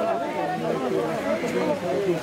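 Several people's voices talking over one another, an unintelligible babble of chatter.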